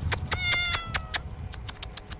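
A cat meows once from up in a tree: a single high call just under a second long, dipping slightly at the end. Sharp clicks sound on and off around it.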